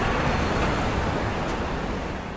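Steady city street ambience: a hum of road traffic.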